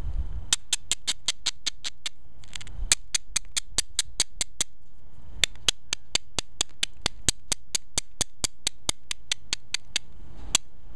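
An abrading stone stroked quickly back and forth along the edge of an Alibates flint point, giving sharp gritty clicks about five a second in three runs with short pauses between. This is the edge being ground down to set up platforms before pressure flaking.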